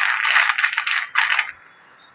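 Glass bangles jangling together on a moving wrist close to the microphone: a loud, dense run of rattling clinks that stops about a second and a half in.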